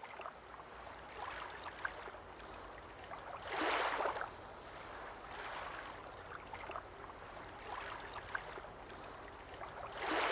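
Small waves lapping and washing against a rocky shoreline: a soft steady wash, with one louder surge about three and a half seconds in.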